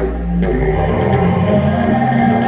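Electronic IDM music played live from Ableton Live on a Push controller: deep sustained synth bass notes under layered pitched synth tones, with only a few drum hits.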